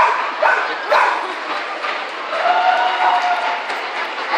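A dog barks three times in quick succession, about half a second apart, followed by a drawn-out steady note in the second half.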